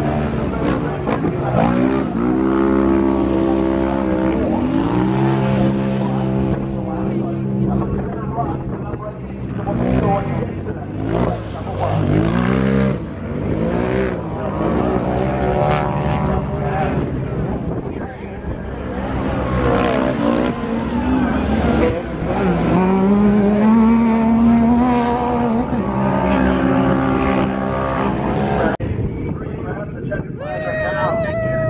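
Engines of racing side-by-side UTVs revving up and down as they run a dirt track with jumps. The pitch climbs and drops again every few seconds, and more than one engine is heard at once.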